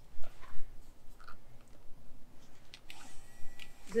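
A few light handling clicks and knocks, then, about three seconds in, a small battery-powered portable shower pump switches on with a faint, steady electric whine.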